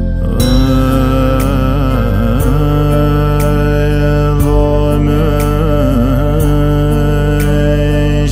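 A voice singing a Dzongkha Buddhist prayer song (choeyang) in a slow, chant-like melody with wavering ornaments, entering about half a second in. Behind it, sustained backing music with a soft tick about once a second.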